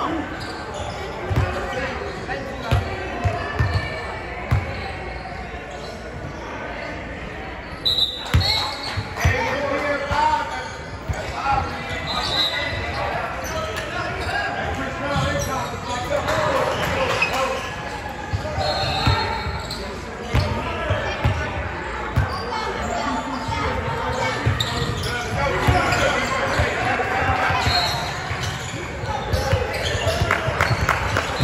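Basketball bouncing on a wooden gym floor, in several runs of thuds, with voices echoing through a large gym.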